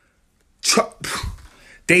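A man's short, sharp, breathy vocal burst in a pause between phrases, about half a second in, followed by softer breath noise before he speaks again.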